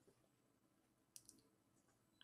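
Near silence with two faint clicks about a second in.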